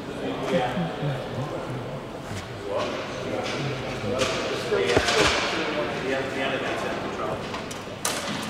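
Men's voices talking indistinctly among a working crew, with shuffling handling noise and a single sharp knock about five seconds in.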